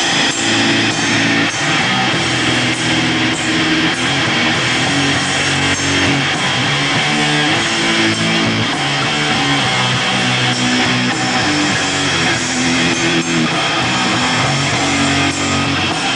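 Doom metal band playing live: distorted electric guitars holding slow, heavy chords over drums and cymbals, loud and steady throughout.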